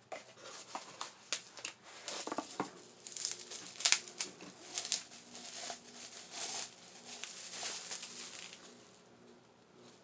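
Packaging being handled as a mug is unboxed: cardboard and bubble wrap rustling and crinkling in irregular bursts, with the sharpest crackle about four seconds in. The handling noise dies away near the end.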